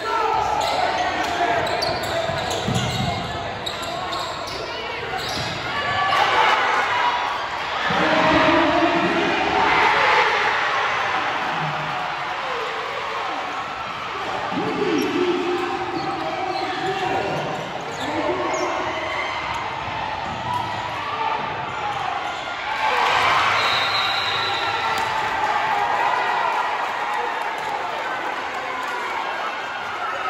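Basketball game in a gymnasium: a ball being dribbled on the court, with indistinct voices of players and spectators echoing in the hall.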